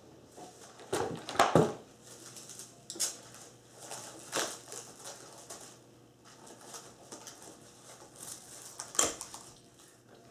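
A glass bowl of sherbet base being stirred in an ice bath, with ice and utensil clinking and knocking against the glass in a few irregular bursts, the loudest about a second in.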